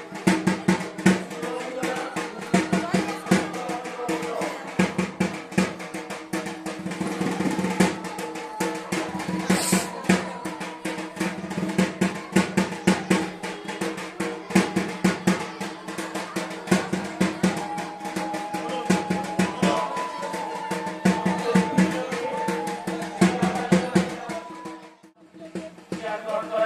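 Music with fast, continuous drumming, rapid strokes without a break, that drops out for a moment near the end.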